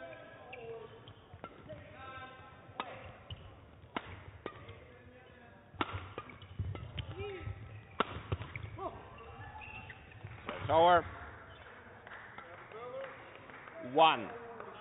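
Badminton rally: the shuttlecock is struck by rackets with sharp cracks a second or two apart, among the squeaks of court shoes on the hall floor. A run of loud shoe squeaks comes near the end.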